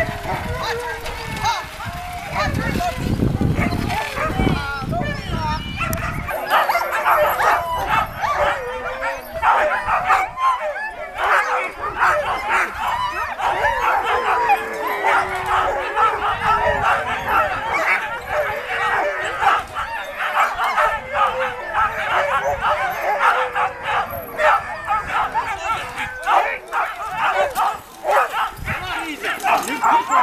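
A team of harnessed sled dogs barking, yipping and howling continuously in excited pre-run clamour, eager to be let go. A low rumble runs under the first few seconds.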